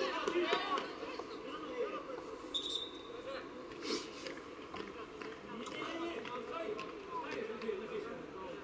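Faint voices of people near the pitch, louder in the first second, then scattered calls and murmur. About two and a half seconds in there is a short, high, steady tone.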